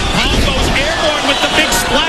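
Voices talking over the steady noise of an arena crowd.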